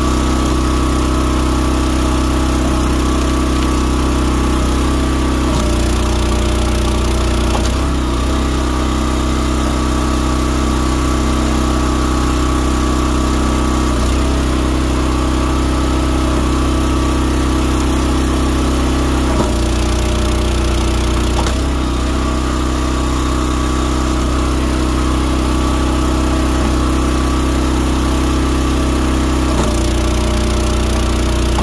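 Wolfe Ridge 28C gas-powered log splitter's engine running steadily. Its note changes every few seconds as the hydraulic ram is worked through the logs.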